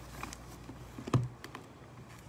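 Light tapping and handling noises close to the microphone, with one louder thump a little over a second in.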